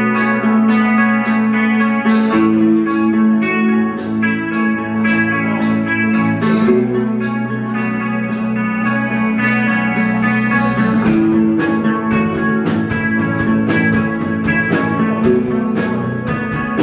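Live rock band playing an instrumental passage: electric guitar and bass guitar over a steady drum beat, with no vocals.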